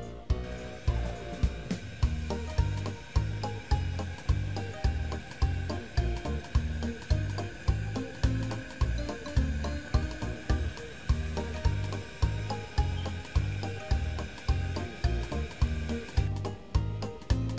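Background music with a steady deep beat and sustained tones over it.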